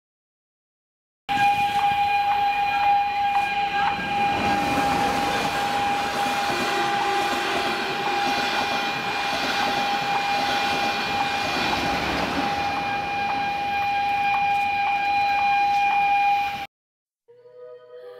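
A passenger train running past a level crossing, under a continuous steady high-pitched tone with a few faint clicks. It starts abruptly about a second in and cuts off suddenly near the end.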